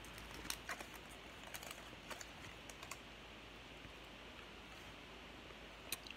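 Foil wrapper of a baseball card pack being torn open and peeled back by hand: faint scattered crackles for about three seconds, then near quiet, with one sharp tick near the end as the cards are handled.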